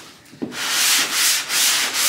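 Sanding on a car's body panel, stripping old paint, in back-and-forth strokes that swell and fade about twice a second. It starts about half a second in, after a short lull.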